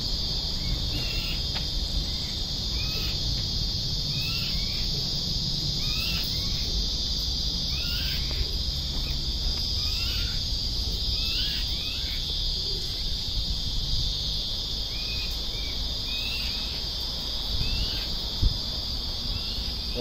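Steady high-pitched insect drone with short bird chirps repeating every second or two, and a single sharp tap near the end.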